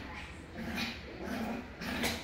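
Small dog vocalising in about three short growly yaps, roughly half a second apart, while spinning after her own tail.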